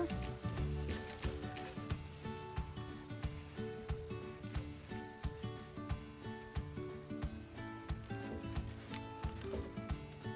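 Quiet background music of held notes, with faint clicks and rustling of dry weed stalks and twine being handled.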